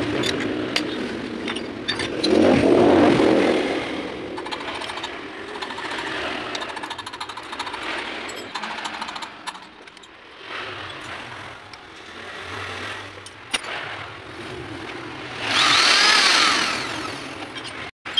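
Metal clanking and knocking as steel tool parts are handled and clamped on a lathe toolpost, with many sharp clicks throughout and a louder scraping stretch a couple of seconds in. Near the end a brief, louder whine with a shifting pitch rises and dies away.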